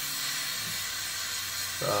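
Gas torch flame hissing steadily, held at a gentle setting to heat platinum and its crucible slowly for melting.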